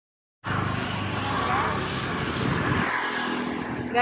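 Steady outdoor background noise, a continuous rush with no clear rhythm or pitch, coming in about half a second after a brief silence.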